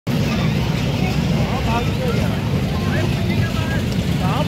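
Crowd voices and scattered children's calls over a steady low rumble.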